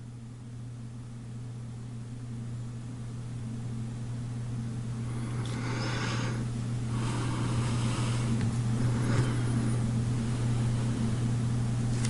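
A steady low hum at one pitch, slowly growing louder, with faint brushing sounds about six and nine seconds in.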